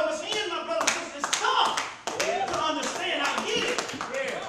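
A man speaking, punctuated by a dozen or so irregular sharp hand claps, in a reverberant room.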